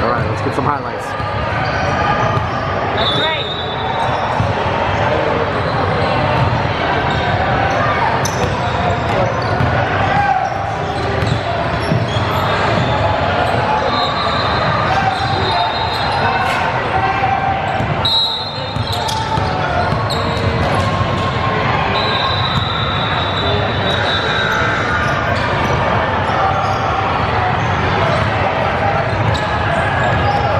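Basketball being dribbled and bouncing on a hardwood court, with sneakers squeaking on the floor and indistinct voices of players and onlookers, all echoing in a large gym.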